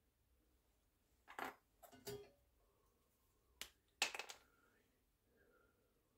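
A few short clicks and knocks of small objects being handled on a workbench, four in all, the loudest about four seconds in and followed by a faint ringing.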